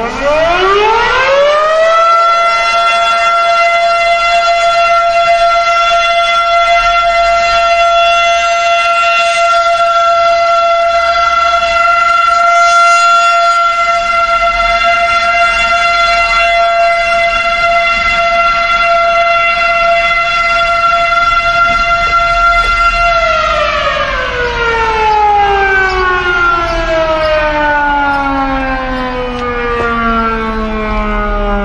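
Federal Signal Model 5 motor-driven fire siren sounding a short alert as a fire department call-out: it winds up over about two seconds to one loud steady tone, holds it, then about 23 seconds in begins a slow wind-down, its pitch still falling at the end.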